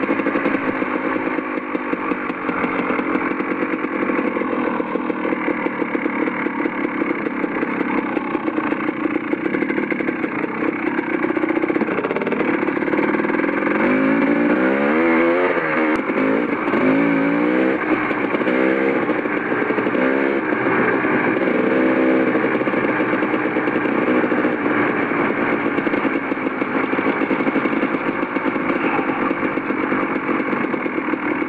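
Dirt bike engine running steadily while riding a gravel trail. Between about twelve and twenty-two seconds in, its pitch rises and falls again and again as the throttle is worked and the gears change.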